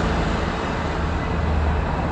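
Engine and road noise of a UAZ-452 van approaching along the road, a steady low hum that grows slightly louder towards the end.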